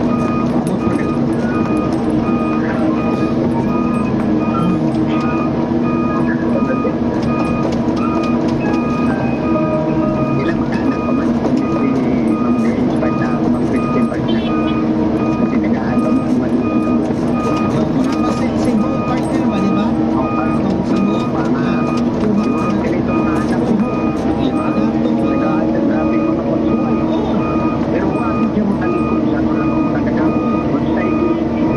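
Excavator's diesel engine running steadily as the machine travels, with its travel alarm beeping on and off throughout.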